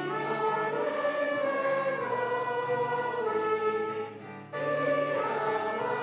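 A group of voices singing a slow hymn-style sung benediction together over sustained instrumental accompaniment, with a short break between phrases about four seconds in.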